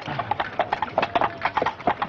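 Clip-clop of hoofbeats, a quick, uneven run of hollow knocks.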